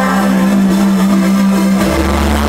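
Live band's electronic music played loud through a concert PA: one low note is held, then a deep bass comes in just before the end.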